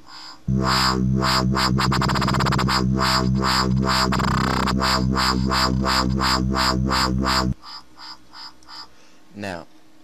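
Dubstep wobble bass from a Native Instruments Massive synth preset. A sustained low bass pulses about four times a second, breaks into a fast stutter about two seconds in and sweeps in pitch around the four-second mark, then cuts off suddenly about seven and a half seconds in.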